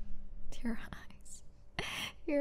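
A woman whispering softly and breathing close to the microphone, in short breathy sounds, with a stronger breath near the end.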